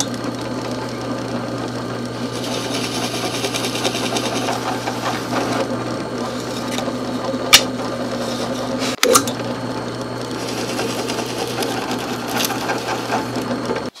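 A drill press runs steadily, its 3/4-inch Forstner bit boring holes through wooden rails. The cutting noise swells twice, and there is one sharp click about halfway through.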